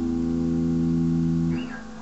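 Telecaster-style electric guitar with a held chord ringing steadily, then damped and cut off about three-quarters of the way through.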